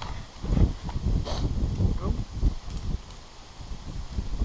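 Rustling and irregular dull thumps from a tree climber shifting against the trunk and his harness gear, close to the microphone.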